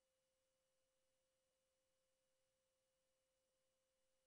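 Near silence, with only an extremely faint steady tone.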